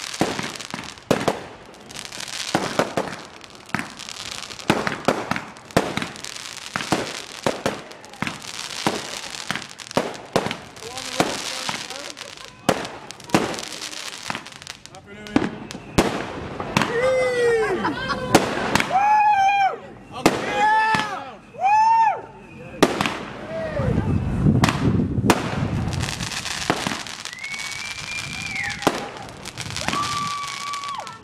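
A consumer fireworks display firing: a rapid, irregular string of shots, bangs and crackling bursts. In the second half, several pitched whistles rise and fall, one after another, and near the end a steady high whistle holds for about two seconds.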